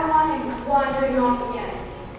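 A young actor speaking lines on stage, heard from the audience: two short phrases in the first second and a half, then a quieter stretch.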